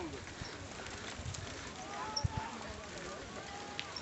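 Mountain bikes rolling along a dirt road, with low uneven rumble and rattle, and faint voices of other riders in the group.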